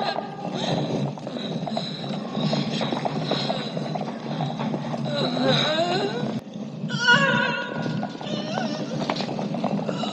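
Several horses walking on a stone floor, hooves clopping irregularly, with a horse whinnying in the middle. Film score and voices run underneath.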